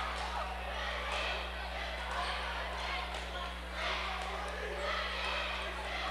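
A basketball being dribbled on a hardwood gym floor, heard as faint irregular bounces over the low murmur of the gym crowd, with a steady electrical hum underneath.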